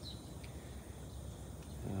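Quiet outdoor background: a steady low hum under a faint even hiss, with no distinct events.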